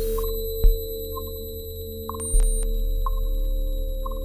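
Live electronic music: steady held synth tones over a deep bass that swells with a sharp hit twice, with short ringing pings about once a second.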